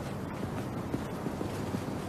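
Steady low outdoor rumble with wind noise, and faint footsteps on pavement about twice a second as someone walks up.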